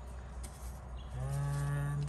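A man's low, steady hum, a held "hmmm" at one pitch lasting about a second, starting about a second in.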